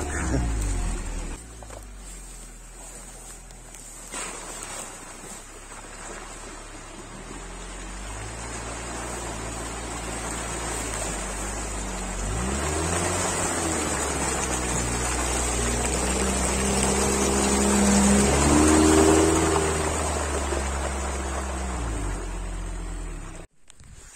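Engine of an all-terrain vehicle on large low-pressure balloon tyres driving through a waterlogged bog track, with water and mud churning under the wheels. The engine grows steadily louder over the middle, rises in pitch a little past halfway, and fades near the end before the sound stops abruptly.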